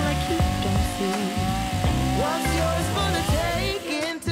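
Background song with a chainsaw cutting underneath it, a steady hiss-like noise behind the melody.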